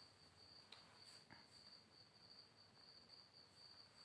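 Near silence: faint room tone with a thin, steady high-pitched trill and a couple of faint clicks.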